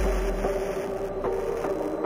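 Hardstyle electronic track in a breakdown: sustained synth tones over a deep bass tail that fades out during the first second. Short percussive hits come in about a second in, at roughly two and a half a second.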